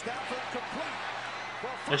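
NFL game broadcast audio playing at low level: an even stadium crowd noise with a play-by-play commentator's voice faint beneath it.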